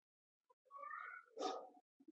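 Faint, high-pitched vocal sounds in the background: a short pitched call, then a louder, harsher one about a second and a half in.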